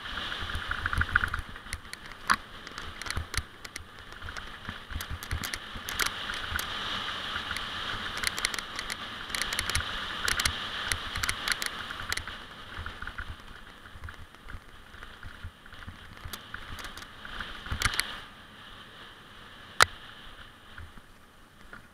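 Mountain bike riding fast down a dirt singletrack: a steady rush of tyres on dirt and wind, broken by frequent sharp rattles and knocks as the bike goes over bumps, several of them loud.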